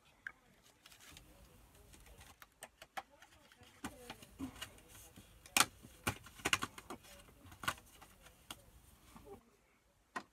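Paper and stickers being handled: stickers peeled from their sheet and pressed onto a paper wreath, making irregular crinkles, rustles and light taps, the loudest a little past halfway.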